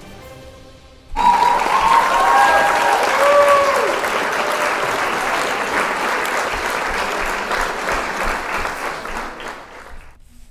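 Crowd applause and cheering with a few whoops, starting suddenly about a second in and fading near the end. It is an edited-in sound effect celebrating the pose being held.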